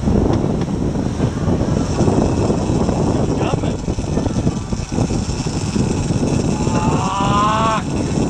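Sportfishing boat running under way: steady engine noise with the wake rushing astern. Near the end a person lets out one drawn-out shout that rises slightly in pitch.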